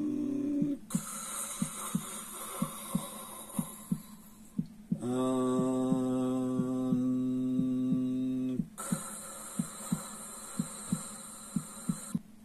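Steady heartbeat thumps, about two a second, under a man's chanted mantra: one long held hummed vowel starting about five seconds in and lasting nearly four seconds, with an airy breathing hiss before and after it.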